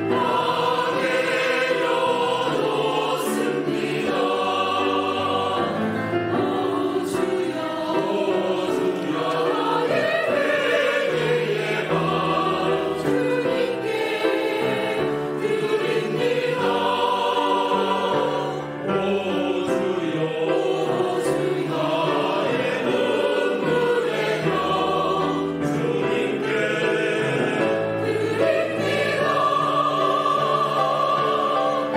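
Mixed church choir of men and women singing a sacred anthem in Korean, sustained phrases in harmony.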